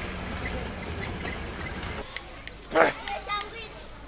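A car passing on a road, heard as a steady outdoor rumble with a low hum, which stops abruptly about halfway through. Then a click and a man's short, loud spoken bursts follow.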